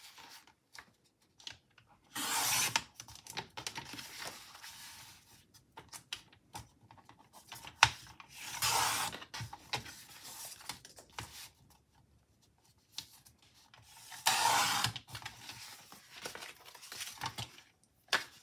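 A Firbon sliding-blade paper trimmer cutting a sheet of printed sticker paper: three cuts, each under a second, about two, nine and fourteen seconds in. Between them the paper rustles and slides on the trimmer's base as it is moved into position.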